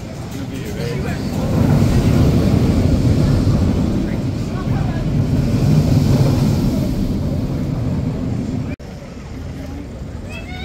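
Steel launched roller coaster train running along its track overhead, a loud low rumble that builds over the first couple of seconds, holds, and cuts off abruptly near the end.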